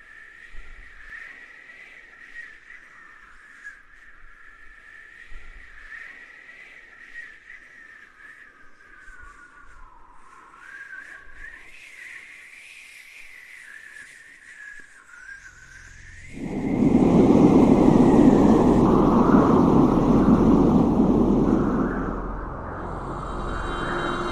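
Ambient soundtrack effect: a high, wavering whistling tone. About sixteen seconds in, a loud rushing roar comes in and eases off somewhat near the end.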